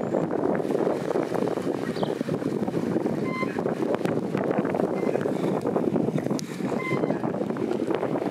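Steady rushing wind buffeting the microphone, with a few faint short chirps above it.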